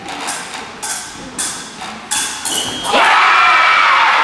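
A few sharp clacks, then about three seconds in a sudden burst of loud shouting and cheering from many voices at a fencing bout.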